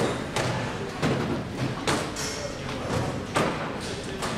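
Plastic screening bins and bags knocking and thudding on the metal tables and rollers of an airport security lane, about four separate knocks.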